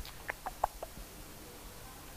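A quick run of about five short clicks on a laptop in the first second, then only faint room noise.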